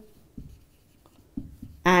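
Marker writing on a whiteboard: a few short, separate strokes as letters are written.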